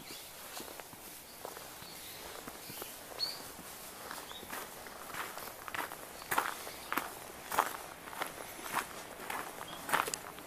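Footsteps of a person walking on a gravel path, a steady crunch about every 0.6 seconds that grows louder and clearer about four seconds in.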